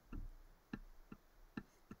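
Faint, light ticks of a stylus tapping on a tablet screen while writing, about five over two seconds.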